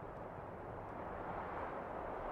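A faint, steady rushing noise that slowly grows louder.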